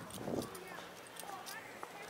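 Footsteps on a concrete sidewalk, light scattered taps over faint street noise.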